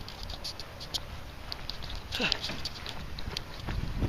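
Footsteps and the rustle and clicks of a handheld camera while walking, with irregular light ticks over a low rumble. A short falling vocal sound comes about two seconds in.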